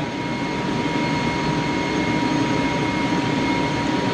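Steady drone of a ship's engine room machinery with the main engine running at sea, heard from the engine control room, with two constant whining tones over it.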